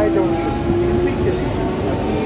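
Medha-electrics EMU local train's traction motors whining as it gathers speed, a steady tone creeping slightly up in pitch, over the low running rumble of the coach on the track.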